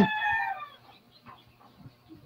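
A rooster crowing: the held final note falls slightly in pitch and fades out within the first second.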